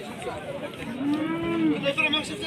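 A cow mooing once, a short call that rises and falls about a second in, over the chatter of voices.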